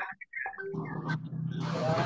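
A voice over a video call garbled by a poor connection: the audio nearly cuts out early on, then comes through as a distorted, buzzing stretch with no clear words.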